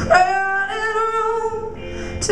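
A woman singing one long held note in a live rock band performance, over electric guitar.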